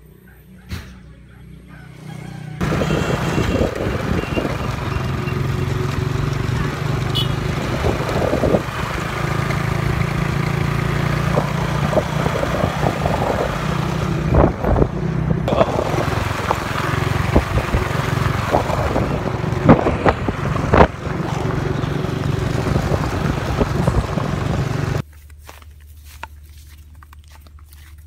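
Wind and handling noise on a handheld phone microphone while walking outdoors: a loud, steady rumble with scattered knocks. It starts abruptly a few seconds in and cuts off just before the end.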